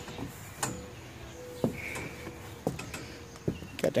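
Quiet outdoor background with a few faint, scattered knocks, and a faint steady hum through the middle.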